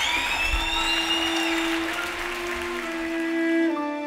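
Live concert audience applauding, the clapping thinning out and fading, with a long held musical note underneath; recorded background music starts near the end.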